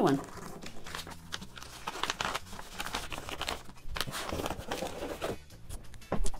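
A paper envelope and a folded pattern cut from an old cotton sheet rustling and crinkling as they are handled and slipped into a box, with small scraping and tapping noises.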